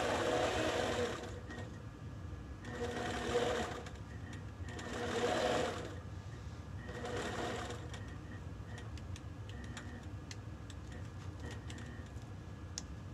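APQS Millie longarm quilting machine stitching in four short runs of about a second each, with brief pauses between. After that it stops, leaving a low hum and a few light clicks.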